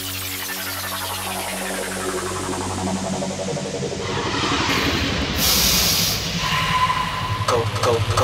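Makina rave mix in a drumless breakdown: the kick drum drops out and a hissing, sweeping noise effect builds up in level, with voices coming in near the end.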